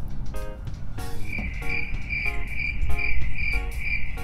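An insect chirping in a steady, even pulse, about four chirps a second, starting about a second in, over faint music with a regular beat.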